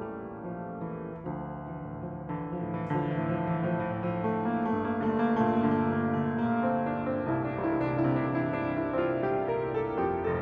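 A Yamaha MX100MR upright piano being played, many notes ringing together, growing louder about three seconds in.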